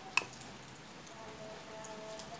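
A metal spoon knocks once against a glass blender jar just after the start, then scoops quietly through thick soursop smoothie, with a faint steady tone in the background.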